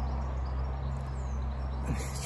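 Light rain just starting to fall in a garden, an even hiss, over a steady low hum; a faint bird chirp falls in pitch about a second in.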